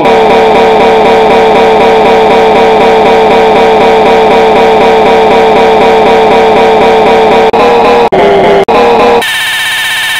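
A very loud, heavily distorted sustained tone with a fast warble. It cuts out briefly three times near the end, then switches to a harsher buzzing tone.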